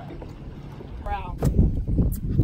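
Wind buffeting the microphone, an uneven low rumble that turns loud about a second and a half in, just after a short voiced call.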